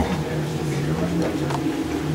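A model railroad locomotive running on the layout, giving a steady low hum whose pitch shifts slightly up and down.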